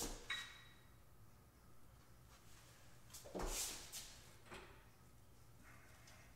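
Wrench on the crankshaft pulley bolt of a Porsche 996 flat-six, turning the engine over slowly by hand for cam timing. Mostly faint, with a metallic click and short ring just after the start, then a thump and brief scrape a little past halfway and a smaller scrape about a second later.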